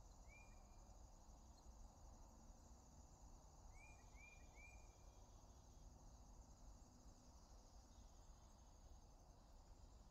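Near silence: faint outdoor ambience with a steady high insect trill, like crickets. A small bird gives a short chirp near the start and three quick chirps around four seconds in.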